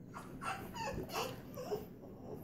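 Puppies whimpering and yipping: a few short, high, wavering whines one after another.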